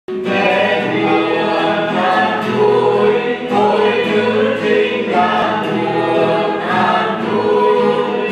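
A small choir of men and women singing a hymn in sustained, steady phrases, with acoustic guitar accompaniment.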